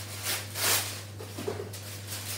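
Baking paper rustling and crinkling as a sheet is handled, loudest about half a second in, over a steady low hum.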